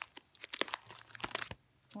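Plastic binder sleeve pages crinkling and clicking as a page of a ring binder full of trading cards is turned. It is a quick run of crackles lasting about a second and a half.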